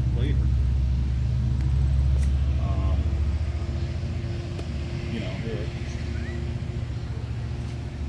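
Low engine rumble of a motor vehicle, strong at first and fading out about three seconds in, leaving a fainter steady hum.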